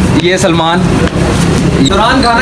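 People talking over a steady low drone.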